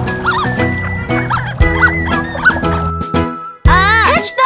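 Bouncy children's-song backing music with a series of short cartoon duck quacks over it, about two a second.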